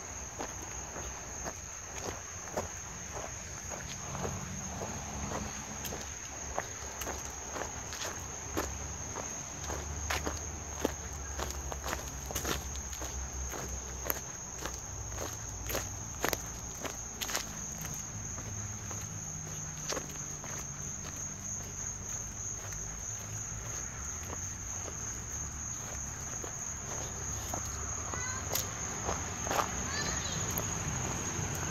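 Footsteps of someone walking over mulch and grass, a string of irregular soft crunches and clicks. Behind them runs a steady high-pitched drone of insects.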